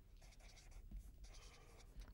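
Felt-tip marker writing on paper: faint, in several short strokes.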